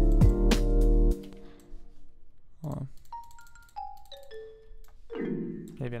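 Computer music playback: a jazzy loop with bass, chords and hi-hat plays for about a second and stops suddenly. Then a few single marimba notes from a software instrument step downward, each ringing briefly through reverb, and a chord sounds near the end.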